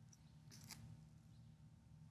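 Near silence: low room hum with a couple of faint clicks of laptop keys being typed.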